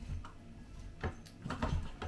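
A few light, irregular knocks and clicks from kitchen items being handled while cooking, mostly in the second half.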